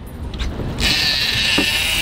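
Big-game fishing reel in free spool, line paying out with a steady high buzz that starts suddenly about a second in as the heavy live bait is sent down to the bottom. A couple of light clicks come before it.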